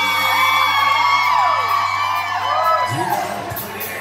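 Live band music holding a sustained chord, with audience whoops and whistles gliding over it. New low bass notes come in near the end.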